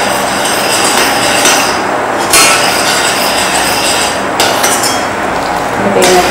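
Sugar syrup boiling hard in a stainless-steel saucepan, a steady crackling hiss of bubbles, while a metal spoon stirs it and knocks against the pan twice, about two seconds in and again near four and a half seconds.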